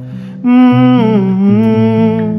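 A man humming the tune with closed lips over acoustic guitar. The hummed line breaks off briefly at the start and comes back about half a second in, sliding in pitch.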